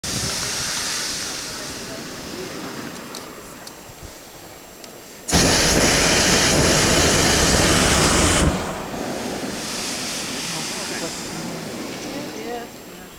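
Hot-air balloon propane burner firing in one blast of about three seconds that starts and stops suddenly. A fainter steady hiss runs before and after it.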